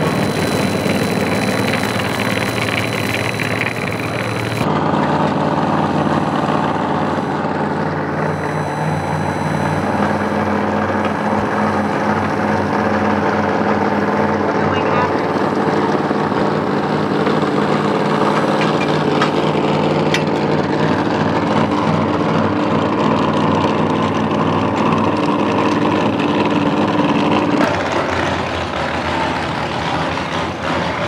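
Vehicle engines idling steadily, with voices in the background.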